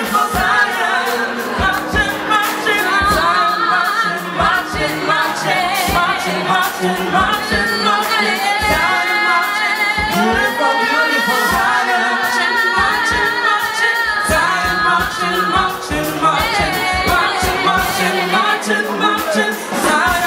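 Live soul and R&B performance: female backing singers singing in harmony over the band's drums, with the female lead singer's voice joining in around the middle.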